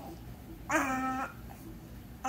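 A baby's single drawn-out vocal sound, about half a second long, about a second in, held at a fairly steady pitch.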